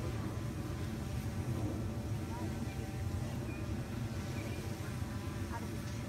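Drone's propellers buzzing steadily overhead as it hovers, an even hum with several steady tones.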